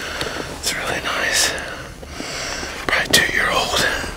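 Whispered speech: people talking in hushed voices, with sharp hissing consonants.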